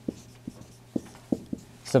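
Dry-erase marker writing on a whiteboard: several short, sharp strokes about half a second apart.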